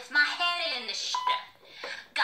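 A person's voice on the soundtrack, then a short steady beep about a second in.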